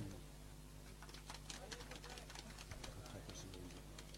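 Faint background during a pause in the announcements: a steady low electrical hum from the public-address system, with distant voices murmuring.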